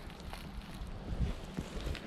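Wind rumbling on the microphone, with a few faint scattered ticks and rustles.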